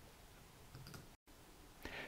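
Near silence: faint room tone, broken about a second in by a moment of total silence where the recording was cut.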